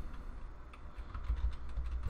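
Computer keyboard typing: a run of light, irregular keystroke clicks over a low steady hum.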